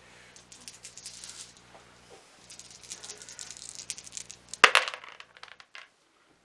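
A handful of small dice rattling as they are shaken, then thrown into a clear plastic dice tub, landing with one loud clatter about four and a half seconds in and skittering briefly.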